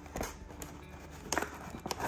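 A few light clicks and taps from fingers handling wires and plastic connectors in a foam model airplane's fuselage, one near the start and two close together near the end.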